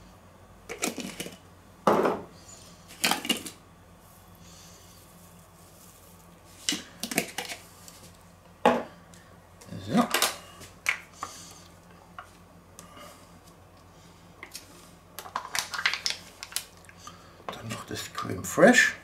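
Scattered short clicks, clacks and knocks of kitchen handling on a wooden cutting board: a plastic spice shaker capped and set down, a spoon clinking, and a tub of cream being opened near the end.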